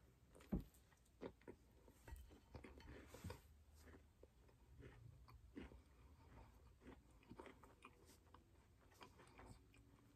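Faint, irregular chewing of a mouthful of buttered Pop-Tart, with one sharper click about half a second in.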